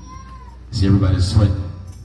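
A man's voice through the church PA system: after a short lull, one loud, drawn-out, pitched phrase lasting about a second.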